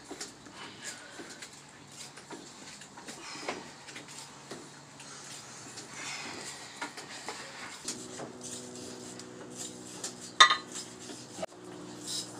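Metal clinking and clanking from loose iron weight plates knocking on a barbell as it is bench-pressed, with one sharp, loud clank about ten seconds in. A steady low hum starts about eight seconds in.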